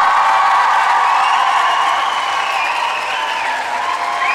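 A large crowd cheering, with many high-pitched shouts and shrieks over applause, easing off slightly toward the end.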